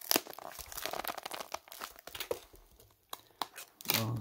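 Foam packing wrap and tape on a cardboard box being pulled and torn off, a run of sharp crackles and rips with a short lull about two and a half seconds in.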